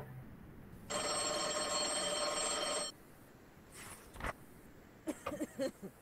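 Telephone ringing: one steady electronic ring lasting about two seconds, starting about a second in. A short noisy sound follows near the four-second mark, then a brief snatch of a voice near the end.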